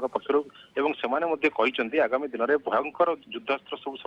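Continuous speech heard over a telephone line, with a narrow, thin phone sound.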